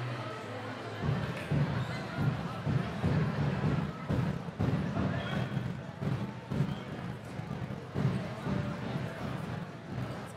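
Sports-hall ambience: indistinct chatter of players and spectators echoing in the hall, with irregular thuds of a football on the hall floor. It gets louder about a second in.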